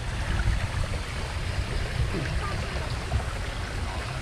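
Water rushing and splashing along the side of a small boat's hull as it moves, over a steady low rumble.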